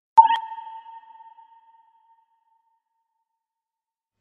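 A single sonar-like ping sound effect about a quarter second in: one clear tone with a bright attack that rings and fades away over about two seconds.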